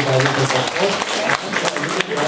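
Audience applauding: dense, uneven hand-clapping from many people, with a voice heard over it in the first moments.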